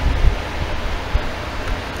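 Rustling and crinkling of a folded paper leaflet being handled, over a steady low background rumble, with a couple of faint clicks.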